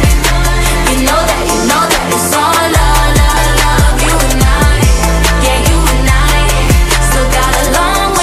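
Pop song by a female vocal group: sung vocals over a steady beat, with deep bass notes that slide down in pitch.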